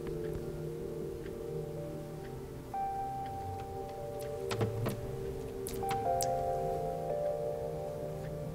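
Soft ambient meditation music: a steady held drone, with new sustained bell-like tones coming in about a third of the way through and again about three-quarters through. A few faint clicks are heard around the middle.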